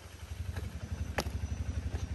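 An engine running steadily with a low, rapid throb that grows slightly louder, and a single sharp click about a second in.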